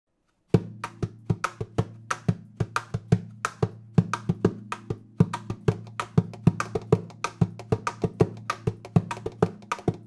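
Acoustic guitar played fingerstyle with percussive taps on the guitar body: a quick, steady pattern of sharp hits over ringing low notes, starting about half a second in.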